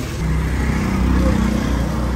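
A motor vehicle engine idling nearby, a steady low hum.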